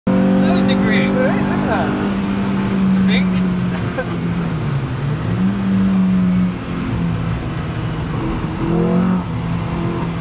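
Renault Clio's engine heard from inside the cabin, running steadily on the track. Its note dips about five seconds in and climbs back, and rises again near nine seconds.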